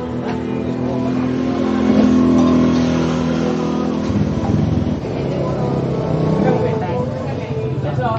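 A motor vehicle's engine running on the road beside the stall, loudest about two seconds in, with voices talking in the background.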